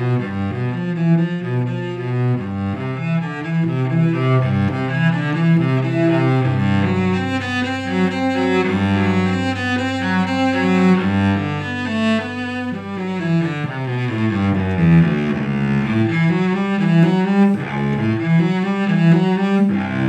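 Unaccompanied cello played with the bow: a flowing line of notes, with a low note held for several seconds under moving upper notes about a third of the way in.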